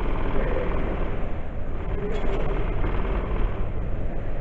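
A steady low rumble with people's voices mixed in.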